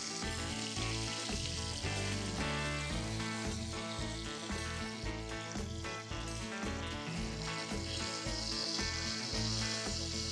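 Breaded chicken breasts shallow-frying in canola oil in a cast iron skillet, a steady bubbling sizzle, heard under background music with a regular bass beat.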